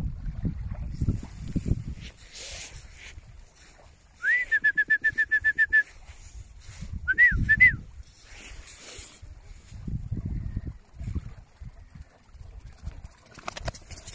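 A bird calling: a quick run of about a dozen clipped, whistled notes about four seconds in, then three separate up-and-down notes a little later. Wind rumbles on the microphone in gusts throughout.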